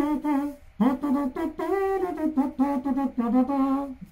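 A man humming a short rhythmic melody with his mouth closed, in the style of imitating an instrument with the mouth.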